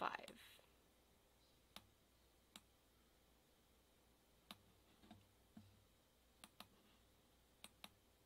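Faint computer mouse clicks, irregular and sometimes in quick pairs, in near silence, from a pen-annotation tool being used on screen.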